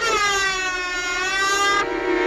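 A single long held wailing tone in the cartoon soundtrack. It starts abruptly, dips slightly in pitch and rises again, then cuts off shortly before the end.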